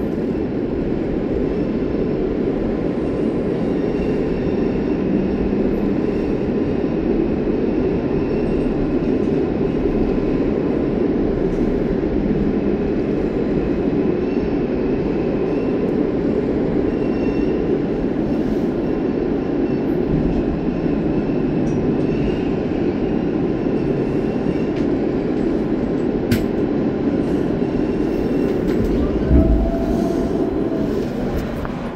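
R160 subway car running at speed through a tunnel, heard from inside the car: a steady, loud rumble of wheels on rail. A single sharp click comes near the end.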